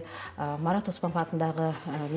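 Speech only: a woman talking continuously.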